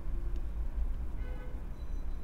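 Steady low hum in the background, with a faint, brief pitched sound about a second and a half in.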